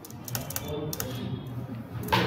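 Computer keyboard keys being typed: a handful of separate clicks, unevenly spaced, over a low background murmur.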